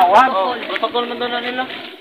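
People talking. The talk fades near the end.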